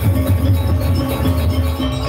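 Gamelan ensemble playing loud, rhythmic dance music, with metal-keyed instruments and drums, amplified through stage speakers.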